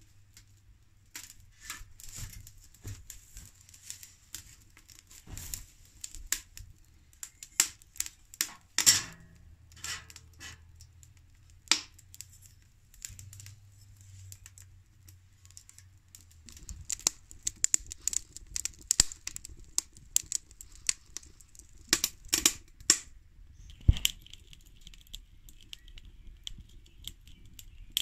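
Wood fire burning in a small steel wood stove: irregular crackling with sharp pops, a few of them much louder.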